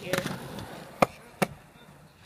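Skateboard wheels rolling on asphalt, fading as the board moves away, with two sharp clacks about a second in, less than half a second apart.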